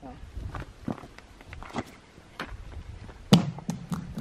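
A thrown object hitting frozen lake ice: one sharp, loud smack about three seconds in, with a short low ring after it and a few fainter clicks before and after. The ice is thick enough to hold it.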